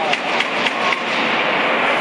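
Cheering and clapping for a goal just scored in an ice hockey game, with a few sharp knocks in the first second.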